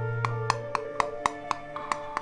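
Hand hammer striking a small metal dish on a leather sandbag in quick, evenly spaced blows about four a second, shaping the dish into a hollow form. Background music with sustained tones plays under it.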